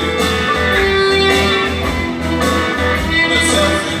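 Rock band playing live: electric guitars to the fore over bass guitar and drums, with a long held note about a second in.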